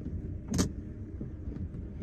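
Low steady rumble of a car's engine idling, heard from inside the cabin, with one brief sharp sound about half a second in.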